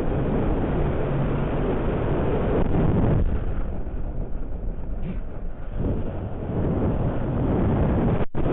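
Wind rushing over the onboard FPV camera microphone of an unpowered 3D-printed lifting-body glider as it dives: a dull, steady rush with nothing high in it, easing a little about three seconds in.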